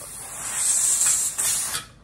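Steam hissing steadily from a pressure canner's open vent pipe at full vent. The hiss grows louder about half a second in, then cuts off suddenly near the end as the weighted regulator is set on the vent pipe, sealing the canner so it can build pressure.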